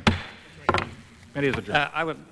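Wooden gavel struck on the rostrum to adjourn the committee hearing: two sharp knocks about two-thirds of a second apart. A man's voice follows.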